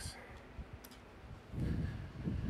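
Click-type torque wrench tightening an intake manifold bolt on a small-block Chevy V8: sharp clicks at the start and again about a second in as the wrench reaches its set torque. Heavier low knocks of the wrench being handled follow near the end.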